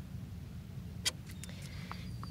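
Steady low outdoor rumble, with one sharp click about a second in and a few faint ticks.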